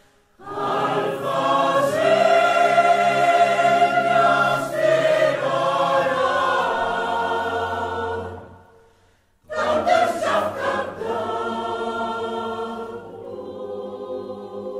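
Mixed men's and women's choir singing in parts. The singing dies away to silence about eight and a half seconds in, and singing starts again a second later.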